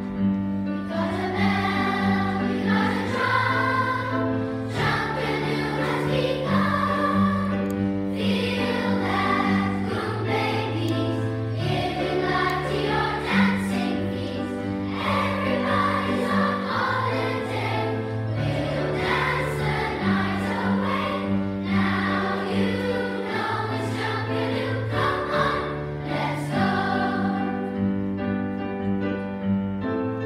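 Large children's choir singing a Jamaican folk song with piano accompaniment, the low piano notes changing about every two seconds.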